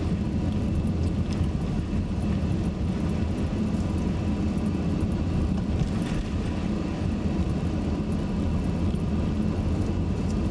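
Steady engine and tyre noise of a car driving, heard from inside the cabin as a low, even rumble.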